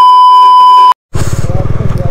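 A loud, steady, high-pitched test-tone beep of the kind laid over TV colour bars, held for about a second and then cut off sharply. After a brief silence, a motorcycle engine is heard running as the bike rides on.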